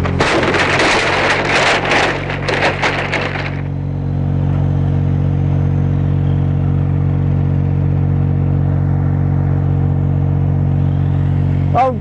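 Small forklift's engine running steadily at an even pitch while it carries a raised load of timber planks. A loud rough noise sits over the engine for the first three and a half seconds, then stops.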